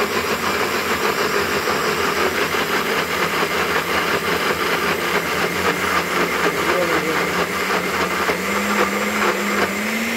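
NutriBullet personal blender running steadily, churning a thick mix of soaked sea moss and a little water. Its motor hum climbs slightly in pitch over the last couple of seconds.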